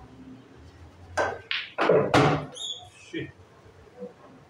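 A few short, loud vocal outbursts about a second in, with no clear words.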